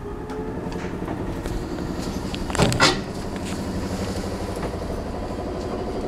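1907 Otis winding-drum elevator running as the car travels: a steady machine hum with a fine rattle. A brief loud clatter comes near the middle.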